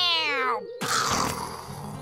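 A cartoon character's voice giving a long, loud wailing cry that falls in pitch and breaks off about half a second in, followed by a short rough, noisy vocal sound. Soft background music continues underneath.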